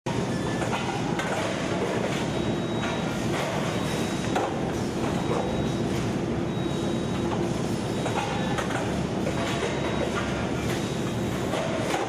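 Rotor aluminium die-casting machine running in a workshop: a loud, steady mechanical din with a faint steady hum and occasional short metallic clanks every few seconds.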